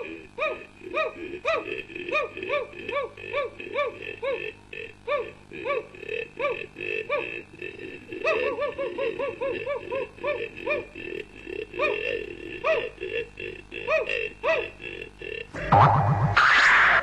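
Cartoon sound effects: a long run of short springy 'boing'-like tones, each rising then falling in pitch, about two or three a second and crowding together around the middle. Music with plucked strings comes in right at the end.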